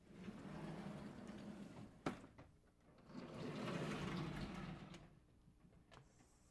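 Vertically sliding chalkboard panels being pushed along their tracks: two long sliding runs of a couple of seconds each, with a single sharp knock between them about two seconds in.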